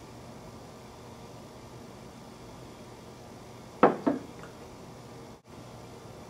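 A man drinking beer from a glass, heard mostly as quiet room tone, with two short sounds close together about four seconds in.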